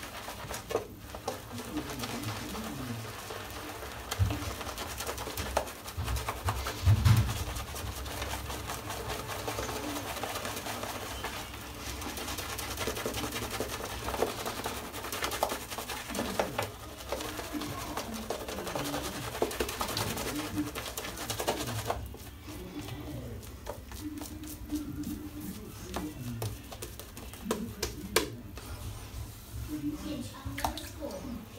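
Shaving brush working shaving-soap lather on the face, a wet crackling and squishing of bristles through thick lather in repeated strokes, quieter for the last third.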